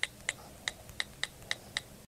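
A typing sound effect: a run of short, even, clicky ticks, about three or four a second, as title text is typed onto the screen.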